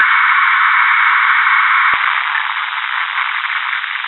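Loud steady rushing noise on a cockpit voice recording, thin and tinny with no deep or very high sound in it, easing slightly about halfway through, with one faint click: the final seconds of the flight's recording just before it ends.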